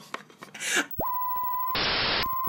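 An electronic test-tone beep comes on suddenly about halfway and holds one steady high pitch. Near the end it is cut by a short burst of TV static hiss, an added edit effect for a glitch.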